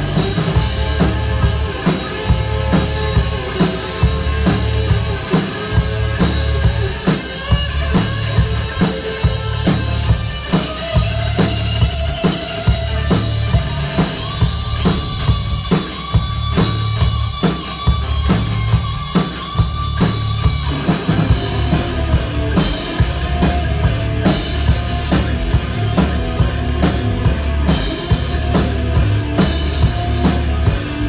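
Live rock band playing an instrumental stretch with no vocals: electric guitar over a steady drum-kit beat with bass drum and snare. Held guitar notes ring out about halfway through.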